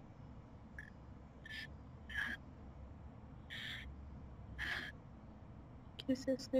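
A woman crying softly: about five short sniffling breaths, faint and spaced a second or so apart.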